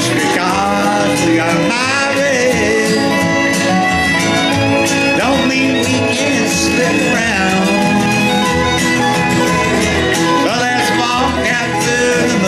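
Live country band playing a song: guitar and upright bass, with a sliding fiddle-like lead line over a steady accompaniment.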